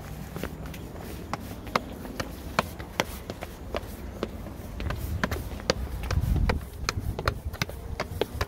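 Footsteps climbing stone steps: a steady run of short scuffs and taps, about three a second. A low rumble swells briefly around six seconds in.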